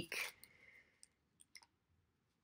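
Small paper cards being handled in the hands: a short breath at the start, then a few faint clicks between one and two seconds in, with near silence around them.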